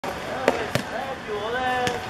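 A football being kicked and bouncing on a hard court: three sharp thuds, the first about half a second in and the loudest, a second a quarter-second later, and a third near the end, with players calling out in between.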